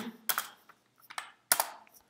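A few separate keystrokes on a computer keyboard, spaced apart rather than in a fast run, with the loudest about a third of a second in and again at a second and a half.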